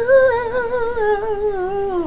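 A man singing one long note with vibrato, slowly falling in pitch.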